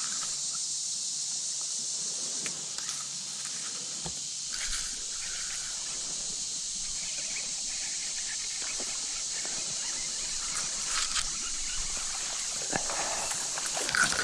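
Steady high outdoor hiss with faint rustling and scattered light ticks as a chatterbait is reeled in along a reedy bank. Near the end comes a short splash as a fish strikes the lure.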